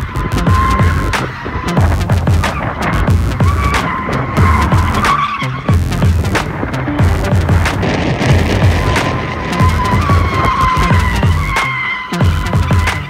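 BMW E46 drifting, its rear tyres squealing in long wavering screeches that rise and fall several times, under electronic music with a heavy bass beat.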